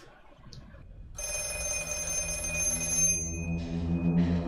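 An old telephone's bell ringing: one ring about two seconds long, starting about a second in, heard through a film's soundtrack.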